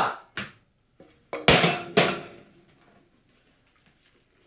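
Knocks and clatter of a metal frying pan: a short knock just after the start, then two loud hits about a second and a half and two seconds in, dying away over the next second.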